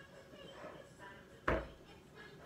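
A single sharp knock about one and a half seconds in, as a salt canister is pressed down onto cookies in a metal muffin pan on a wooden table to shape cookie cups.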